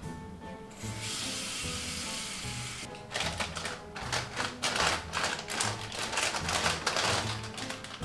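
Tap water running steadily into a stainless steel pot for about two seconds. From about three seconds in, plastic instant-noodle packets crinkle and rustle as hands rummage through them in a wire basket.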